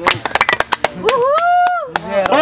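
Scattered hand claps from a small crowd, then one voice holding a long, high 'uhou' cheer for about a second that rises, holds and falls, answering a call to make noise for the battle.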